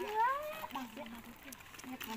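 A baby's short, high rising vocalization at the start, followed by a woman talking quietly.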